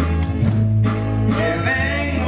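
Live band playing a praise song: a drum kit keeping a steady beat about twice a second over electric bass and guitar, with men singing into microphones.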